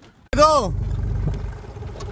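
Tractor engine running steadily as it pulls a wooden trailer, heard from the trailer; the low rumble cuts in suddenly about a third of a second in. A man's voice calls out once just as it starts.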